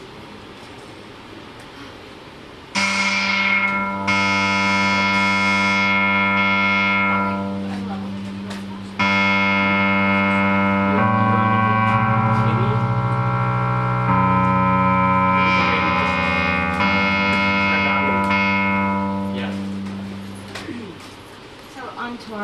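Roland synthesizer keyboard playing a series of long, steady sustained chords like a drone. The chords come in about three seconds in, change every few seconds, and fade out near the end.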